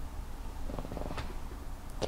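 Quiet pause with a steady low room rumble and a faint, finely pulsed murmur near the middle.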